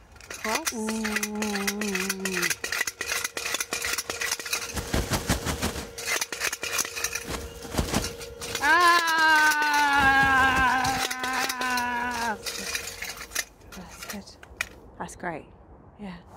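Improvised storm sound effect: a spoon rattling and clattering on a round metal dish, with a spinning tin humming top giving a steady drone. Twice a long wavering wail, like howling wind, rises over it, the second louder, near the middle.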